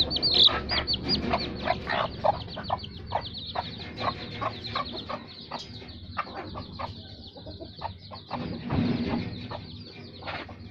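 Ten-day-old desi chicks peeping: many short, high, falling peeps overlapping several times a second, thinning out a little past the middle.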